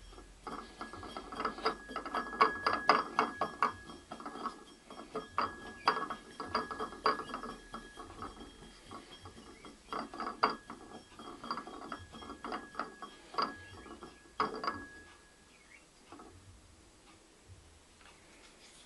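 A hand-turned potter's banding wheel spinning, rattling and clicking as it turns, in several spells with short pauses between, with a thin steady whine under the clicks.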